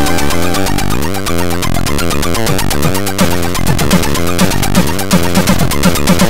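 Four-channel AHX chiptune played back from Hively Tracker: square and pulse-wave synth voices over a fast, even percussive pattern, with quick pitch glides up and down.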